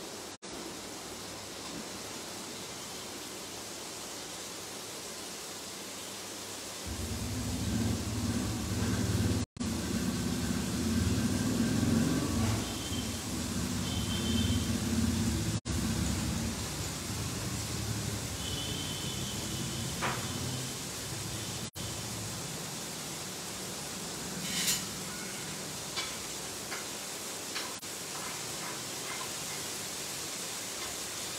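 Marinated paneer cubes sautéing in a pan on a gas stove: a steady sizzling hiss. A louder low rumble comes in about seven seconds in and dies away some twelve seconds later. A few light clinks of a spatula against the pan come near the end.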